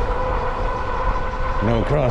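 Low wind rumble on the microphone and a steady high whine from a Lectric XP electric bike's hub motor at cruising speed. Near the end a voice starts speaking.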